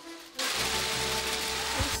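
A dense, hissing rush of noise starts suddenly about half a second in, over steady background music.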